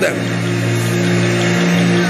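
Sustained keyboard pad holding a low chord of several steady notes, with a haze of a congregation praying aloud beneath it.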